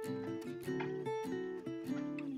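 Background music: an acoustic guitar playing a run of plucked notes.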